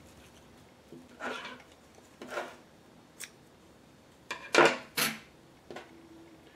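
Scissors snipping waxed sinew and handled on a tabletop: a few short, sharp snips and clacks, the loudest pair close together about four and a half and five seconds in.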